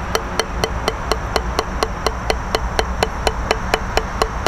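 Drumsticks striking a Gransen rubber drum practice pad on a stand in an even, steady stream of single strokes, about seven a second: stroke practice.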